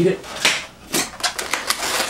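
Latex twisting balloons being handled and twisted by hand: rubbery squeaks and clicks, with a sharper snap about half a second in and another about a second in.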